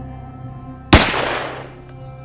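A single rifle shot about a second in, loud and sharp, with its echo dying away over most of a second, over steady background music.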